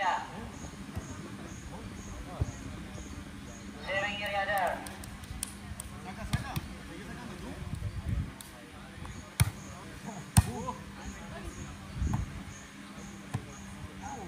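Beach volleyball being struck by players' hands during a rally: a few sharp slaps, the two loudest about a second apart midway, with a short shout from a player about four seconds in.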